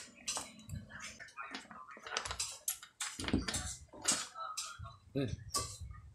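Irregular metallic clicks and clinks from a folding bike multi-tool working a seatpost's saddle clamp as the saddle is loosened and taken off.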